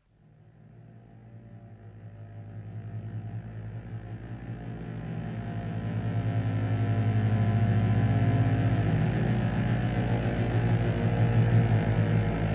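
Low synthesizer drone with a fast flutter, steady in pitch, fading in from silence over about eight seconds and staying loud, like a rumbling engine building up as the opening of a 1970s jazz-fusion track.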